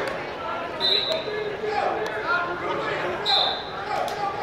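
Spectators chattering in a busy gymnasium, many voices overlapping, with two short high-pitched squeaks, about a second in and again near the end.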